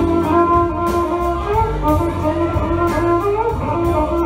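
Live band playing an instrumental passage: electric guitar and bass over a steady drum beat, with a lead line of held melodic notes that step up and down in pitch.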